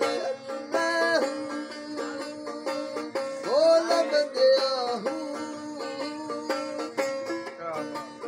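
A bowed folk fiddle with a round, decorated resonator and long neck plays a melody over a steady low drone note, the notes held and sliding into pitch, with one clear upward slide about halfway through.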